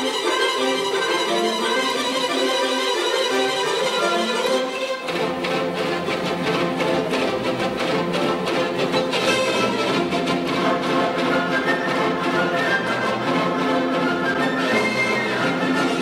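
Orchestral music led by violins. About five seconds in, lower instruments join and the music takes on a quick, busy pulse.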